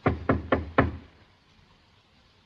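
Fist knocking on a panelled wooden door: four quick knocks within about a second.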